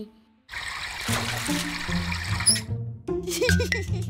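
Cartoon sound effect of water running from a tap, a hissing rush that starts about half a second in and stops after about two seconds, over light background music.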